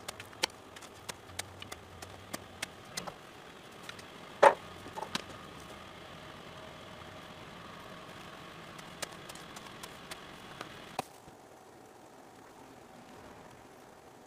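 Shovel digging into lawn soil around a buried sprinkler riser: scattered scrapes and knocks, the loudest about four and a half seconds in, over a steady background hum. About eleven seconds in the sound cuts to a quieter, steady ambience.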